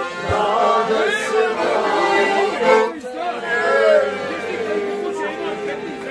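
A group of men and women singing a folk song together to live accordion accompaniment. A held accordion note runs under the voices.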